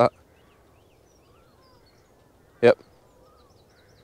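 Faint, scattered bird chirps in the background, short rising and falling calls, with a man saying a brief "yep" partway through.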